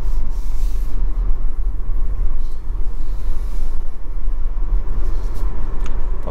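Steady low rumble of road and wind noise inside a Tesla Model Y's cabin as the car drives up a steep road.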